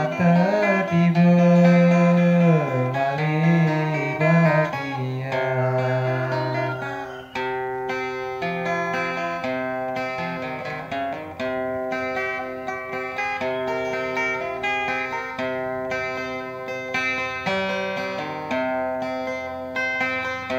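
Acoustic guitar picking a melody in the South Sumatran gitar tunggal style, with a male voice singing a wavering, ornamented rejung line over it for the first seven seconds or so. After that the guitar plays on alone in steady picked notes.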